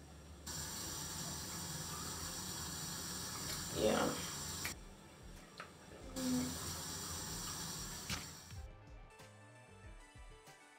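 Water running from a tap in a small room, turned on about half a second in, stopping briefly midway and running again until shortly before the end. A short voice sound comes around the middle, and music comes in near the end.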